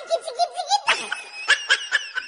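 People laughing in quick rapid bursts, with higher-pitched laughter joining about a second in.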